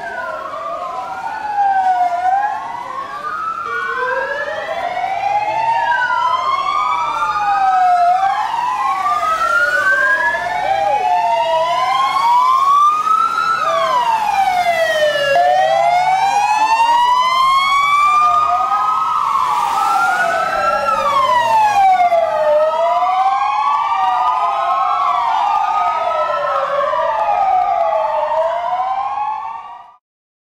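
Several police vehicle sirens wailing at once, their rising and falling tones overlapping out of step as a convoy of police vans drives off. The sirens grow louder over the first few seconds and cut off suddenly at the very end.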